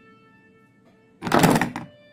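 A loud knock and scrape, about half a second long, of a knife and its hard plastic Kydex sheath being handled on a wooden table, over faint background music.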